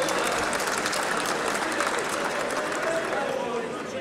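Crowd noise in a parliamentary chamber: many voices talking and calling out over one another, with scattered clapping, as members heckle a speaker at the rostrum.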